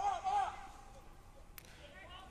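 A short, high-pitched call from a distant voice in the first half second, then faint open-air background with a single click about one and a half seconds in.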